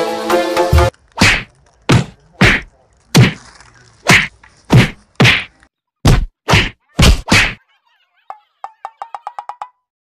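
A rapid series of loud whack-and-punch fight sound effects: about eleven sharp hits, roughly half a second apart, each with a short ringing tail, on a man being beaten with sticks and kicked. Music plays briefly at the start, and a short run of faint quick ticks follows near the end.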